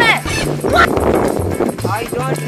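A woman's raised voice in short spoken exclamations over background music with a repeating low bass pattern.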